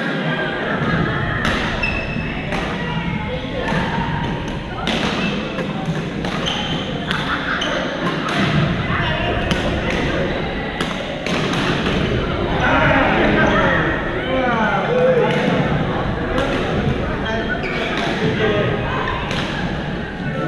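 Badminton rackets hitting a shuttlecock in rallies: sharp smacks every second or two, echoing in a large sports hall, over a steady murmur of voices.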